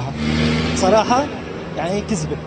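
Motor vehicle engine running close by in city street traffic, a steady low drone that fades near the end, with a brief voice about a second in.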